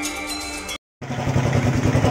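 Background music that stops abruptly a little under a second in. After a brief silence, an engine runs steadily with a low, even hum.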